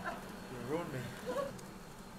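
Faint, indistinct voices over a low, steady hum.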